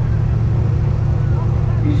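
Race car engine idling, a steady low rumble.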